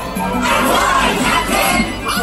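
Large crowd of children and adults shouting and cheering together over loud stage-show music, the voices swelling about half a second in.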